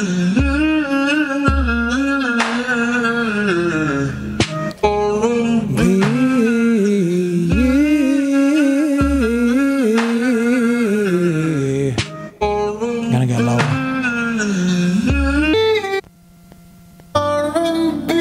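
A man singing R&B bounce runs as a vocal exercise: quick runs that wind up and down in pitch, phrase after phrase, with a short break about 16 seconds in.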